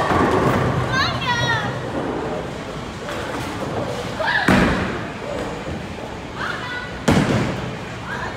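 Bowling-alley thuds and crashes of heavy bowling balls and pins, three loud ones: at the start, about four and a half seconds in, and about seven seconds in. Children's voices call out between them.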